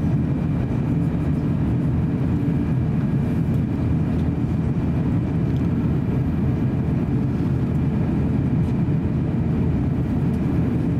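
Steady rumble in the cabin of an Airbus A350-900 airliner on approach, from its Rolls-Royce Trent XWB engines and the airflow over the fuselage, with a faint steady high whine above it.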